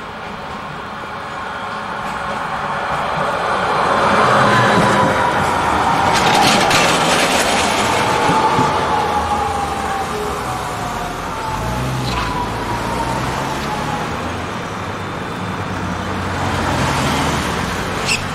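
Croydon Tramlink Bombardier CR4000 tram running past close by on street track: a rolling noise swells and a whine slowly falls in pitch as it goes, with a few sharp clacks. Road traffic follows, with a car engine rumbling in the second half.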